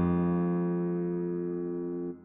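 A bass guitar from score playback holds one low note that fades slowly.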